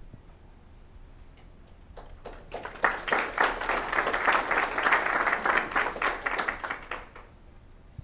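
Audience applause: a few scattered claps about two seconds in, swelling into steady clapping that dies away about seven seconds in.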